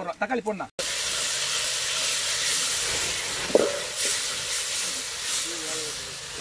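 Chopped onions and tomatoes sizzling as they fry in an iron kadai. It is a steady hiss that starts abruptly about a second in, with a single sharp knock near the middle.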